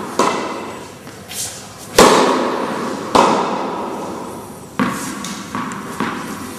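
Tennis ball hits, sharp cracks of racket on ball with softer knocks of the ball between, each ringing out in a long echo. Four loud hits fall roughly one to two seconds apart.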